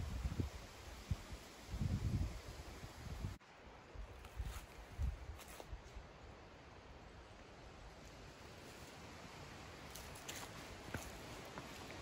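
Faint footsteps and leaf rustling of a person walking a forest trail, soft and scattered, over quiet outdoor background. In the first couple of seconds there are a few low bumps on the microphone.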